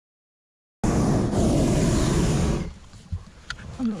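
Hot air balloon's propane burner firing: a loud, steady roar that starts abruptly about a second in and cuts off about two seconds later.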